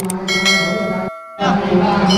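Metal temple bell struck about a quarter second in, ringing with many bright overtones over a steady low hum; the sound drops out briefly just after a second, then picks up again.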